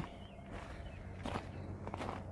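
Faint footsteps of a person walking over grass and gravel, with a couple of soft scuffs about a second and a half in.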